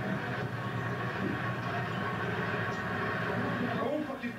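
Soundtrack of a projected video artwork, played back over loudspeakers into a lecture hall: a steady, dense rumbling noise with no clear speech in it.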